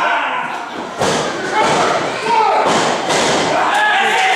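A thud on a wrestling ring's canvas mat about a second in, with shouting voices around it.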